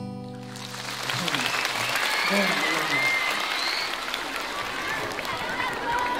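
A last strummed acoustic-guitar chord rings out for about a second, then a concert audience applauds, with high-pitched shouts and cheers over the clapping.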